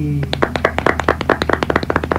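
A rapid run of sharp clicks, about a dozen a second, starting shortly in and lasting about two seconds.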